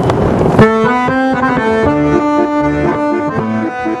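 Piano accordion playing a tune with sustained chords over bass notes, coming in about half a second in after a short burst of noise.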